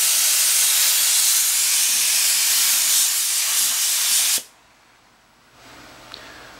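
Paint spray gun hissing steadily as it lays a light coat of white paint, then cutting off abruptly a little over four seconds in.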